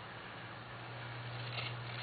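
Quiet room tone: a steady low hum under faint hiss.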